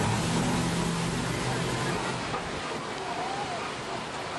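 Safari ride truck on the move: steady road and wind noise with a low engine hum that fades out about two seconds in, and faint voices in the background.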